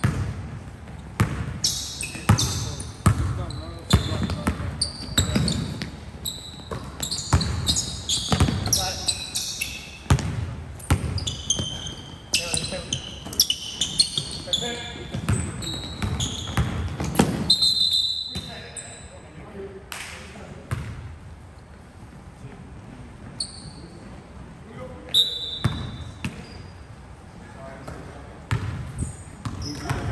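Basketball game on a hardwood gym floor: the ball bouncing in repeated sharp thuds, sneakers squeaking in short high chirps, and players calling out, all echoing in the large hall. The bouncing is busiest in the first half and thins out after about eighteen seconds.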